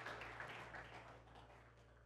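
Faint applause from a congregation, thinning out and fading toward near silence.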